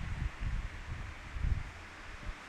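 Pause in speech: low, muffled bumps and rustle picked up by a close microphone, irregular, with a few stronger bumps, over faint hiss.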